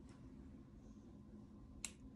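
Near silence, then one sharp click near the end: a hair-extension snap clip pressed shut onto braided hair.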